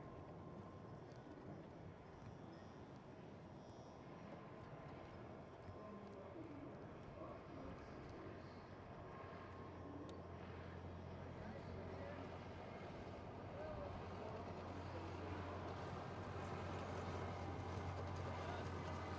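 Faint outdoor ambience with distant voices and a low steady hum that grows louder from about halfway through.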